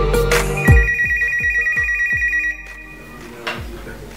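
A telephone ringtone sounds over the end of a hip-hop beat with deep sliding 808 bass and hi-hats. The steady two-tone ring comes in about half a second in and lasts about two seconds, then ring and beat stop together, leaving a quiet background with a faint click.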